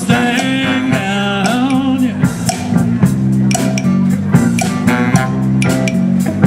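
A live big band with a horn section, electric guitar and drum kit playing a soul/R&B tune. A held melodic line fills the first two seconds, then the band plays short, punchy stabs over a steady drum beat.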